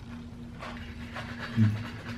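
Eating at the table: a knife and fork scraping and clicking faintly on a plate, then a short low 'mm' from someone chewing about one and a half seconds in. A faint steady hum runs underneath.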